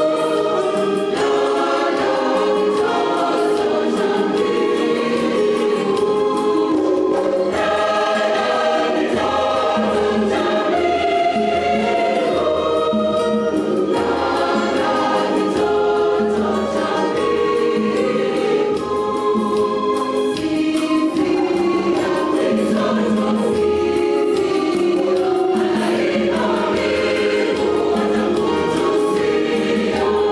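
A large mixed church choir of men's and women's voices singing a Christmas carol in several parts, loud and continuous.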